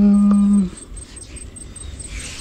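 A man's long, steady hum, 'hmmm', held at one pitch and ending under a second in, followed by quiet outdoor background.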